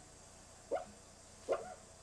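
A dog barking twice, two short barks about three-quarters of a second apart.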